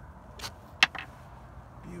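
Handling noises in a boat as a freshly landed striped bass is dealt with: a short rustle, then a sharp knock and a lighter click just after, over a low steady hum.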